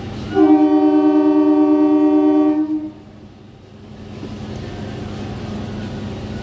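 Train horn giving one steady blast of about two and a half seconds, two notes held together, cutting off sharply. A low rumble follows and slowly grows louder.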